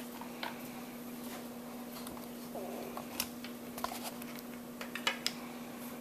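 Scattered light clicks and taps from handling a compression tester's rubber hose and metal fittings, over a steady low hum.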